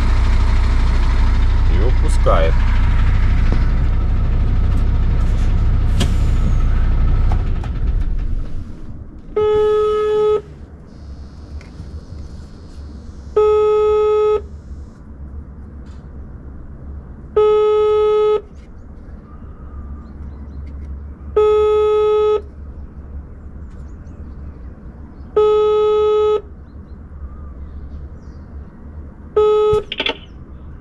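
A truck's diesel engine idling until about eight seconds in, when it drops away; then an intercom call tone at the gate terminal: six one-second beeps, one every four seconds, a call ringing unanswered.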